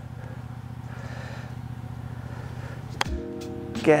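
A golf wedge striking the ball once on a short pitch shot, a single sharp click about three seconds in. Background music comes in right after the strike, over a steady low hum.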